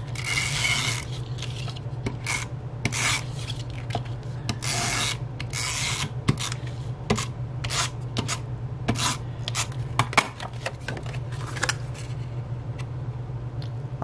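Hand-held adhesive tape runner drawn across cardstock in several short rasping strokes, followed by a run of lighter clicks and taps.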